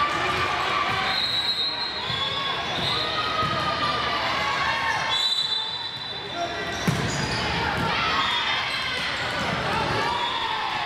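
Volleyball rally on an indoor hardwood court: the ball is hit back and forth while players call out. There is one sharp hit about seven seconds in.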